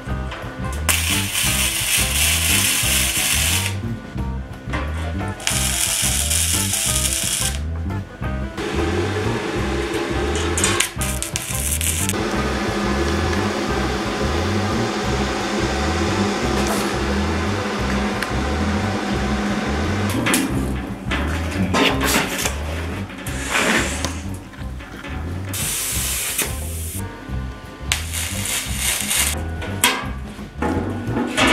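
Background music with a steady beat, overlaid by two spells of gasless flux-core MIG welding, each a couple of seconds of crackling arc, near the start.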